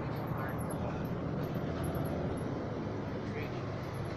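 Steady low rumble of a bus's engine and road noise, heard from inside the moving bus.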